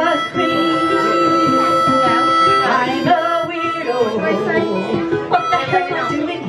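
Live harmonica playing a bending, wavering melody over strummed ukulele chords, with no singing.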